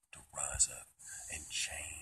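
Only speech: a man speaking in a whisper, in short broken phrases.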